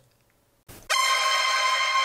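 Sound effect: a loud, steady, horn-like buzzer tone that starts just under a second in and is held at one pitch.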